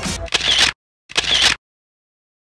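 The music cuts off, and a short, identical editing sound effect plays twice, under a second apart, with dead silence between.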